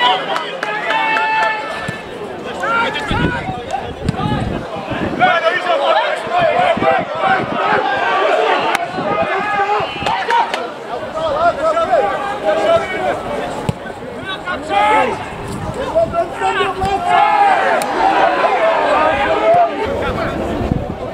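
Shouting voices of players and spectators during open play at a football match, many calls overlapping and indistinct.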